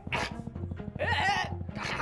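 Three short whining vocal sounds that rise and fall in pitch, over background music.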